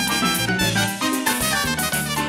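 Live tropical dance band playing an instrumental passage: a saxophone and brass section over drum kit, timbales and bass, with a steady driving beat.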